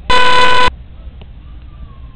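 A single loud horn blast: one steady, unwavering tone lasting just over half a second, so loud that it distorts.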